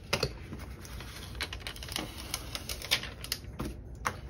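Hands handling plastic binder pages and a vinyl decal sheet on a tabletop, giving scattered light clicks and taps.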